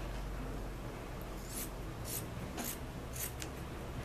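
Scissors cutting through cotton T-shirt fabric in a series of about six faint, crisp snips roughly half a second apart, starting a little over a second in.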